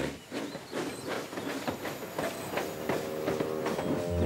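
Steam locomotive chuffing as it pulls away: a steady run of sharp puffs, about three or four a second, with a hiss of steam. Soft music comes in about two and a half seconds in.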